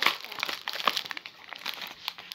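Crumpled plastic wrapping crinkling and crackling in the hands as it is pulled apart and unwrapped, loudest at the start.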